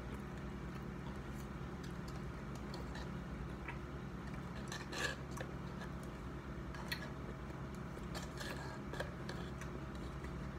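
Plastic spoon scraping and tapping against a cup of ice cream: scattered small clicks and scrapes, the loudest about five seconds in, over a steady low hum.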